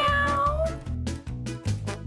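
A long meow that rises in pitch and ends under a second in, over music with a steady beat.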